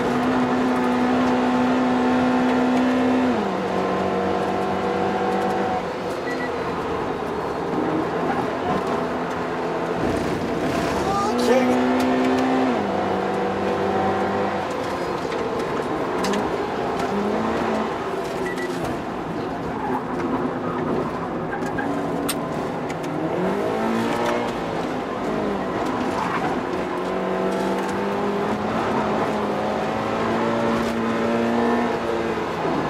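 Toyota GT86's flat-four engine heard from inside the cabin, driven hard on track through its automatic gearbox: the note holds high, steps down in pitch at shifts about 3.5 and 13 seconds in, and rises and falls repeatedly through the corners in the second half.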